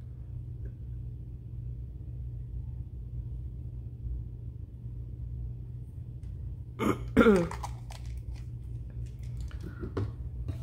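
Steady low hum of the room, with a short wordless vocal sound about seven seconds in, falling in pitch, followed by a few light clicks and taps from small glass paint bottles and a brush being handled and set down on the work surface.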